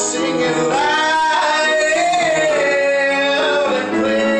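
A man singing long held notes that glide up and down, over steady musical accompaniment.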